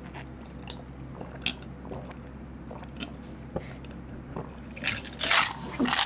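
A man gulping down a fizzy apple cider vinegar drink in one go close to a microphone, with soft swallows every half second or so. Near the end come loud breathy gasps as the carbonation burns.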